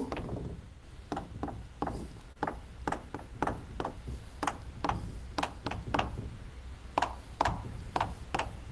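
Chalk tapping and scratching on a blackboard as a formula is written: a run of short sharp taps, about two or three a second.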